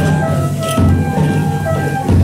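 Hana Matsuri festival accompaniment: a bamboo flute playing held notes over a taiko drum beaten without pause.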